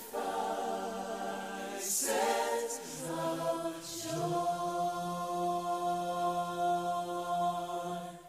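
Choir voices with accompaniment sing a last phrase, then hold one long final chord over a low sustained note from about four seconds in.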